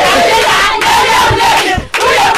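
A crowd of women shouting and cheering together, many voices at once, with a brief break just before the end.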